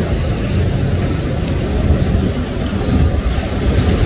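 Steady low rumble with a hiss over it, the general noise of an outdoor street scene, with no clear engine tone or single event standing out.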